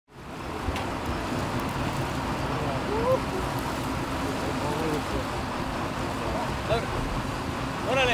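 Sportfishing boat's engine running steadily under way, with wash from the wake and wind over the open deck, fading in at the start.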